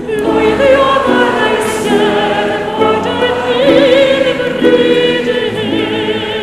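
Classical soprano singing a slow, sustained melody with wide vibrato in Welsh, over an accompaniment of held chords that change about once a second.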